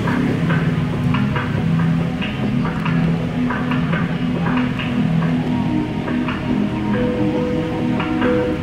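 Live band music, a soft opening: sustained low chords with light irregular taps, and higher held notes coming in near the end.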